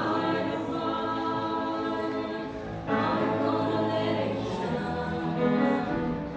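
An adult mixed choir of men's and women's voices singing, with a new phrase entering about three seconds in.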